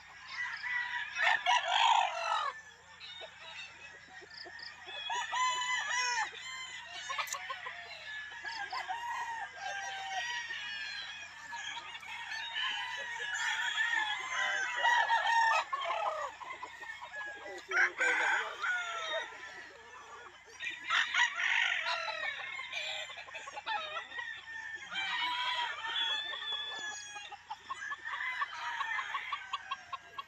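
Several Sweater-line gamecocks crowing in the yard, one call after another and often overlapping, with loud bouts recurring every few seconds.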